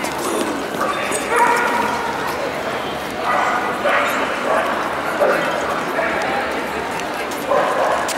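Dogs barking and yipping in several short bursts a few seconds apart, over a steady hubbub of crowd chatter.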